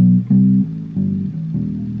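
Electric bass guitar playing a short line of about four plucked low notes in a row, each held briefly before the next.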